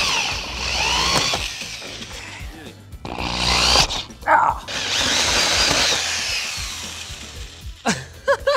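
Cordless drill with a hole saw cutting through a PC case's solid front panel, in two long runs with a short break a little past three seconds in.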